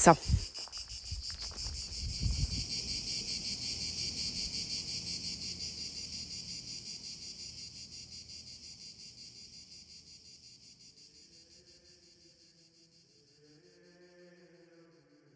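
Crickets chirping in a steady, pulsing chorus that fades out gradually over about ten seconds, with some low rumbling noise in the first couple of seconds. Faint chanting begins near the end.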